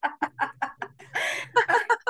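A woman laughing loudly in rapid, staccato 'ha-ha-ha' pulses, about seven a second, with a breathier stretch of laughter about a second in: forced laughter-yoga laughing.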